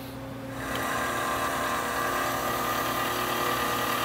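Camshaft polishing machine running: its variable-speed motor turns the camshaft while an abrasive belt backed by a rubber wheel laps the cam lobes. A steady mechanical whir with several constant tones, coming up louder about half a second in.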